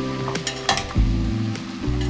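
Fried mini donuts being rolled in cinnamon sugar in a ceramic bowl: soft grainy rustling with a few light clicks, over steady background music.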